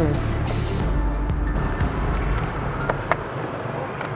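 Low rumble of a passing motor vehicle in street traffic, fading away about three seconds in, under background music, with two light clicks near the end.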